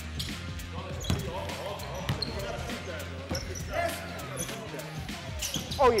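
Basketball bouncing and thudding on a gym floor at irregular intervals during live 3x3 play, with players' calls and shouts in the hall.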